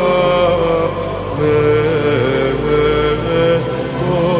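Slow music: a melody in long held notes with a slight waver, over a steady low drone.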